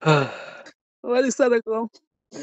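A person's voice: a long sigh that falls in pitch, then a few short spoken syllables about a second later.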